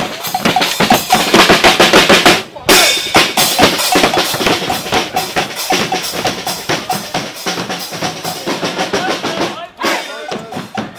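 Carnival marching brass band playing loudly: trumpets, trombones, saxophones and sousaphone over pounding bass drum and snare. The music breaks off abruptly about two and a half seconds in and starts again at once.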